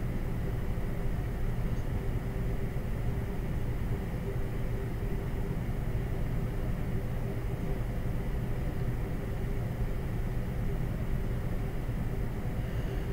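Steady low hum and hiss of background noise, with no speech.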